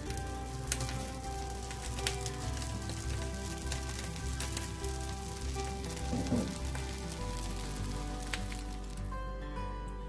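Sweet vermicelli zarda being stirred and scraped in a hot pan with a spatula: a light sizzle with scattered clicks of the spatula on the pan, which fades out about a second before the end. Soft background music plays under it.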